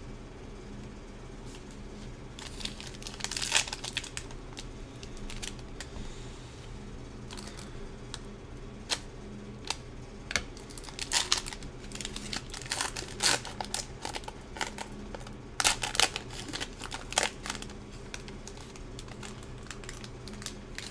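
Foil trading-card pack wrappers being torn open and crinkled by hand, with cards being handled. The sharp crinkles come in irregular clusters over a low, steady hum.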